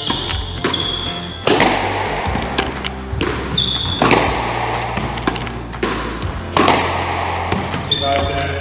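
Squash ball strikes, sharp repeated knocks of racket on ball and ball off the walls and floor, over background music with a steady bass. A few brief high squeaks come from court shoes on the wooden floor.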